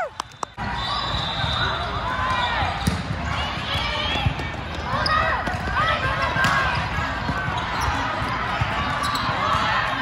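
Busy indoor volleyball hall: many overlapping voices of players and spectators, sneakers squeaking on the court floor, and thuds of volleyballs being hit and bouncing, all in a large echoing space.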